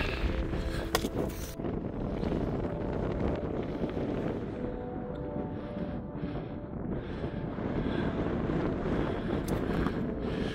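Wind buffeting the microphone: a steady low rumble and rush, a little stronger in the first second or so.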